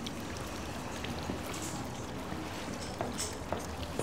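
Steady background room noise of a restaurant dining room, with a few faint light clicks about three seconds in.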